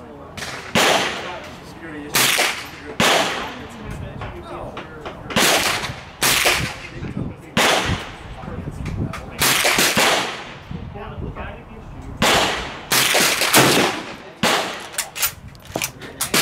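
Rifle shots on an outdoor range: more than a dozen sharp reports at irregular intervals, some only about half a second apart and several bunched together near the end, each with a short echoing tail.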